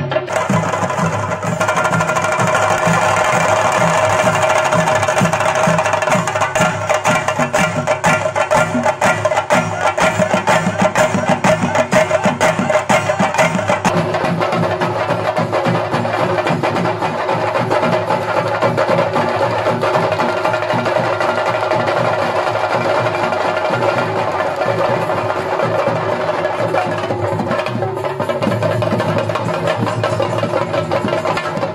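A Kerala chenda drum ensemble playing a rapid, unbroken roll of strokes, with a steady held tone running under it.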